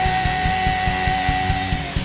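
Live heavy rock band playing loud: rapid drum hits under distorted electric guitars, with one high guitar note held steadily and dipping in pitch near the end.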